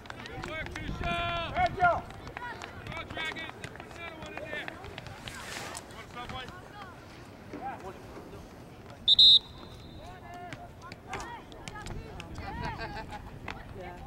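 Shouts of players and spectators at an outdoor soccer game, loudest about a second in, with scattered knocks of the ball being kicked. A single short, high-pitched whistle blast, the loudest sound, comes about nine seconds in.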